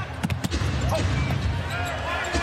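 Live game sound from a basketball court: a basketball bouncing on the hardwood, with a few sharp knocks close together near the start, over a steady crowd hum in a large arena.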